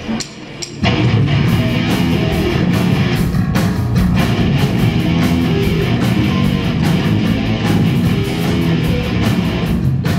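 Live rock band playing loud: electric guitars over a drum kit, the full band coming in about a second in after a short lull.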